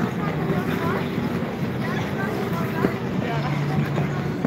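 Ice rink ambience: a steady scraping hiss from skate blades on the ice, with skaters' voices and calls in the background.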